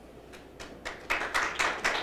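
Audience applauding: a few scattered claps that swell into steady applause about a second in.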